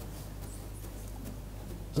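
Quiet room tone with a steady low hum between words.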